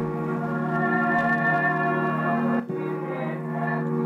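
A music sample played back from beat-making software: a little ominous, reverse-vocal-like sound of sustained chord tones, with a brief dip about two and a half seconds in.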